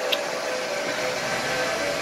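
Cooling fans of a Huawei 1288H v5 rack server running at a steady whir, an even rushing noise with a constant hum tone in it.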